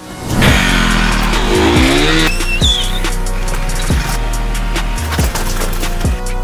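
An engine revving with a tyre screech, rising in pitch over the first two seconds. It gives way to music with a heavy, regular bass beat.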